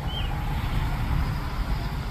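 A car driving by: steady engine and tyre noise over a low rumble.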